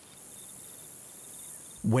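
Crickets chirping: a steady high hiss with a faint, rapidly repeated high-pitched chirp.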